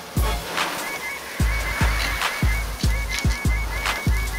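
Music with a heavy bass drum beat and a repeating high-pitched synth figure.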